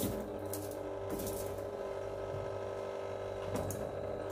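Small cardboard drink cartons being set onto a mini fridge's wire shelf: a few light taps and rustles over a steady hum.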